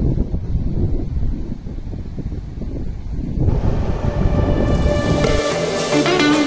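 Wind buffeting the microphone, a loud, uneven low rumble that cuts out shortly before the end. Background music fades in under it about halfway through and is left on its own near the end.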